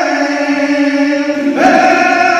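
A man singing a saeta, holding a long note with no accompaniment, then sliding up to a higher note about one and a half seconds in.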